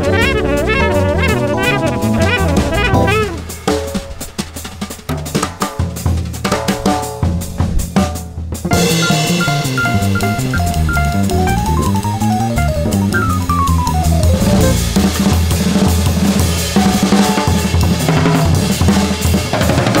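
Small jazz band playing fast bebop: drum kit, electric upright bass, keyboard and saxophone. A few seconds in, the band thins out to mostly drums for about five seconds, then the full band comes back in.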